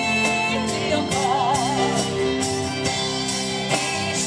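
Live folk-rock band playing a song, with a singer holding long notes with vibrato over acoustic guitar, violin, keyboards and drums.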